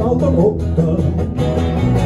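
Acoustic guitars playing a blues together live, with a steady strummed rhythm over a low bass line.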